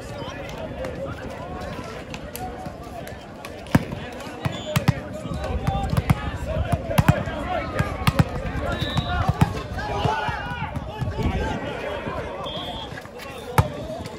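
Volleyball impacts: a series of sharp slaps and bounces of the ball, with the loudest single hit near the end as the ball is served. All of it sits over steady chatter and calls from players and spectators.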